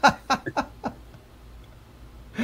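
A man laughing in a run of short bursts that die away within the first second.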